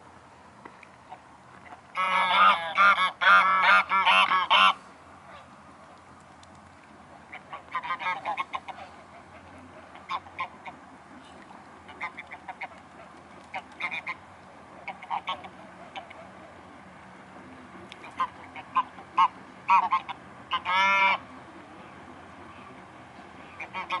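Mute swans calling with loud, nasal honks. A dense run of calls starts about two seconds in, a few scattered shorter calls follow, and another loud run comes near the end.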